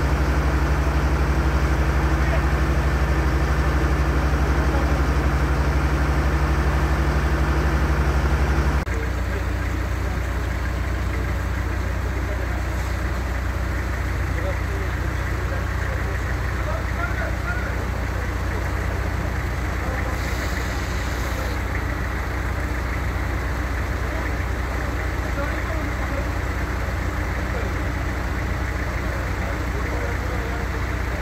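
A vehicle engine idling steadily with a low, even hum. About nine seconds in the sound cuts abruptly to a slightly quieter idling engine with a different pitch.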